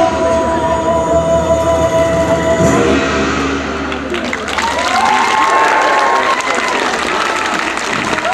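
Music with long held notes ends about three seconds in. Audience applause follows, with a voice heard over it.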